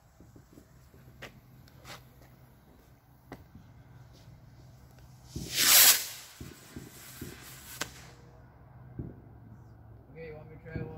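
A firework going off with a loud hiss that swells up about five and a half seconds in and dies away over the next two seconds, with a few sharp pops and crackles scattered before and after.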